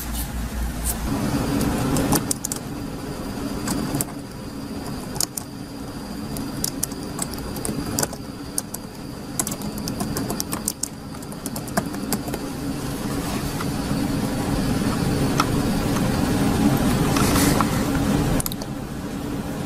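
Computer keyboard keys clicking irregularly as text is typed, over a steady low rumble that grows slightly louder toward the end.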